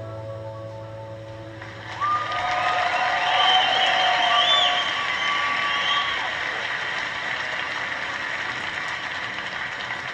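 A concert audience applauding and cheering, with whistles, after the last notes of a song fade. The applause swells suddenly about two seconds in, peaks, then slowly tails off, heard through a vintage wooden tube radio's speaker.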